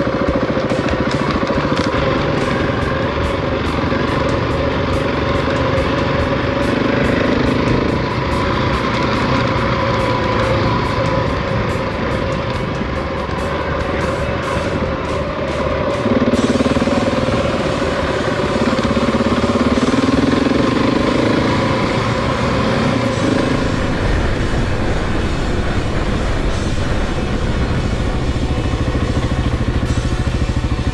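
Single-cylinder motorcycle engine running under way on a dirt trail, its pitch swelling and rising a few times as the throttle is opened. Music plays over it.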